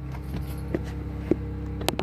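A steady low machine hum made of several fixed tones, with a few soft clicks and taps scattered through it, the sharpest near the end.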